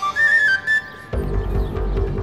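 Background score of a TV drama: a high, thin whistling tune that steps up in pitch and wavers. About a second in, it gives way to low, heavy music.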